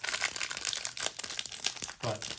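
Thin clear plastic wrapper crinkling and tearing as fingers peel it off a stack of trading cards: a dense, irregular run of small crackles.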